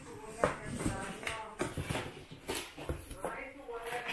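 Crumpled brown kraft packing paper rustling and crinkling as it is pulled out of a cardboard box, with low voices over it.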